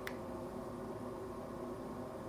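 Home heating running: a steady, even rush of air, described as a little loud. A faint click comes just after the start.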